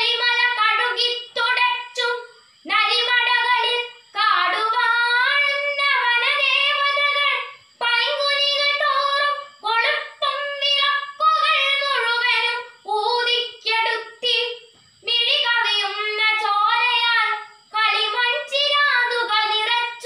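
A girl's solo voice reciting a Malayalam poem in a chanted, sung style, without accompaniment, in melodic phrases broken by short breath pauses.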